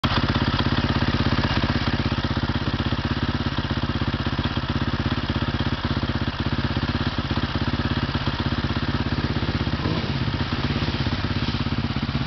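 Motorcycle engine idling steadily close by, with an even, rapid pulse. From about ten seconds in the engine sound changes as a dirt bike rides up through the puddles.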